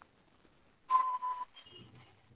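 A short, high animal cry about a second in, then a softer, lower one near the end.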